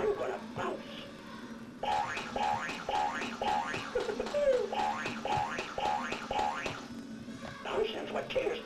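Electronic Tigger plush toy playing its recorded sound: a run of about ten short repeated notes, roughly two a second, with a sliding voice in the middle, starting about two seconds in and stopping near seven seconds. A voice-like snippet sounds just at the start, and a low steady hum runs under it all.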